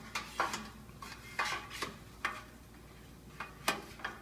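Paper packing rustling and tearing, with light clinks of the white sheet-metal shelves of a flat-pack wall magazine rack being handled as they are unwrapped; about six sharp clicks scattered through.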